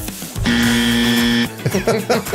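Wrong-answer buzzer sound effect played from a studio soundboard: one steady buzzing tone about a second long, starting about half a second in, marking the guess as incorrect. Brief speech or laughter follows near the end.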